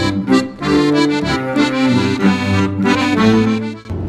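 Accordion playing a folk tune in held chords over a bass line, laid over the footage as background music. It breaks off just before the end.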